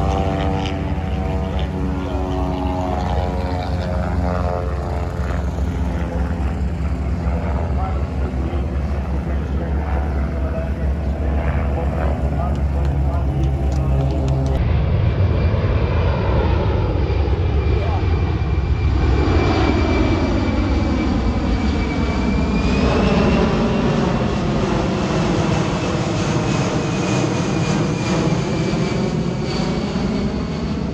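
For about the first half, radial-engined propeller warbirds run with a steady low drone. After a sudden change, a four-engine C-17 Globemaster III jet transport passes low overhead: a high turbofan whine over a rushing noise whose pitch sweeps as it goes by.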